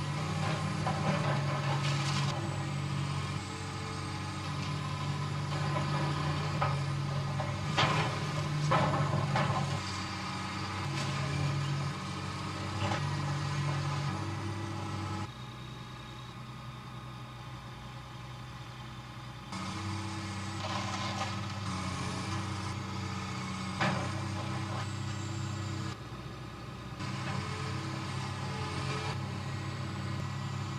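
Caterpillar hydraulic excavator's diesel engine running and changing pitch with the load as it works, easing off for a few seconds around the middle. Sharp cracks and crashes come as the excavator's arm breaks into the house's walls.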